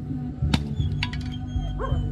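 A bolo knife chopping into a green coconut on a concrete surface: two sharp strikes about half a second apart. A short rising yelp-like call is heard near the end.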